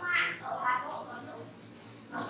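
A child's high-pitched voice speaking in short phrases.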